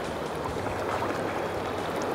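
Steady rush of river current: an even, unbroken water noise with no distinct splashes or clicks.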